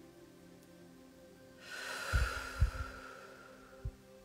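A long breath blown out through the mouth, starting a little under two seconds in and lasting over a second, its puffs of air thudding low on the microphone. A single soft thump near the end.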